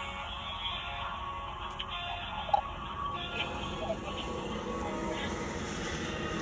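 Telephone hold music playing through a phone speaker, thin and narrow-band, over a low steady rumble.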